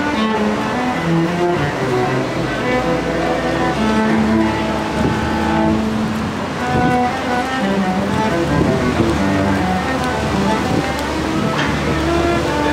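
Solo cello bowed, playing a melody of held, sustained notes.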